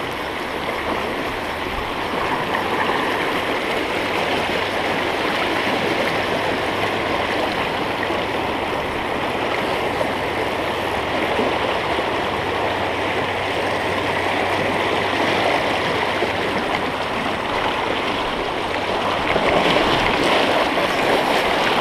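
Fast, shallow mountain river running over a stony bed, a steady rush of water heard close to the surface, swelling slightly near the end.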